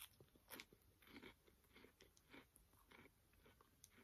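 Faint crunching of a peanut butter wafer bar being bitten and chewed, a soft crunch roughly every half second.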